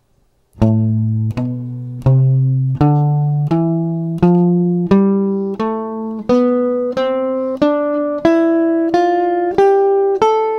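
Archtop jazz guitar playing the C major scale one note at a time from the note A (shape 6 fingering), evenly picked notes about 0.7 s apart climbing step by step.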